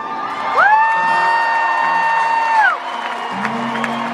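One high voice holds a steady "woo" for about two seconds: it swoops up into the note, holds it, then drops away. After it, live acoustic guitar and the crowd carry on.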